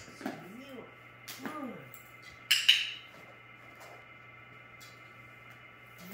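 Two sharp clattering clinks in quick succession about two and a half seconds in, the loudest sounds here. Before them, in the first second and a half, come a few brief rising-and-falling vocal sounds.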